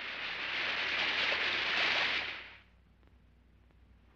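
A rushing hiss that swells and then cuts off sharply about two and a half seconds in, leaving only faint quiet.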